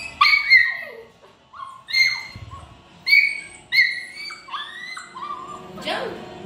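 A puppy whining: a series of short, high-pitched whimpers and yips, some falling in pitch, about one every second.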